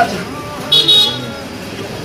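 A vehicle horn gives a short high-pitched honk about two-thirds of a second in, lasting about a third of a second.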